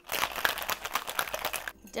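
Ice rattling hard inside a metal cocktail shaker being shaken, a fast, dense clatter that stops abruptly near the end.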